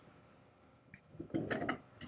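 Metal rear trunnion being unscrewed from the threaded receiver tube of a Howard Thunderbolt carbine: a short, rough grinding of metal threads turning against each other, starting about a second in.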